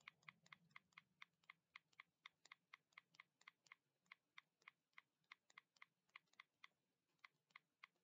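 Faint typing on a computer keyboard: a quick, fairly even run of key clicks, about four a second.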